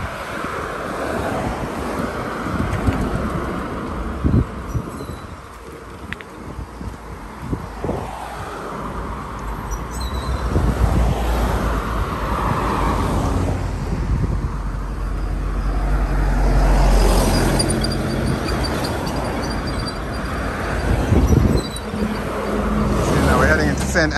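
Road traffic passing close by: cars and a van driving past, their engine and tyre noise swelling and fading as each goes by. The loudest pass, a deep rumble, comes a little past the middle.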